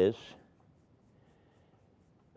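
Near silence with the faint scratch of a paintbrush laying oil paint onto paper.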